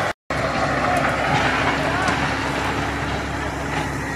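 Farm tractor engine running steadily at an even pitch, powering a crop-sprayer rig.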